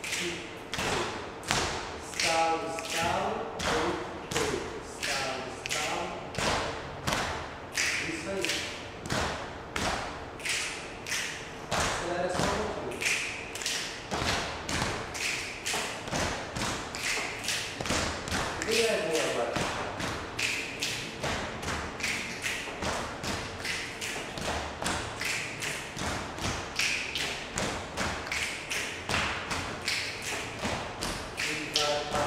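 A group doing body percussion, palms slapping the chest in an even rhythm of about two strikes a second. A few brief voices come through the beat.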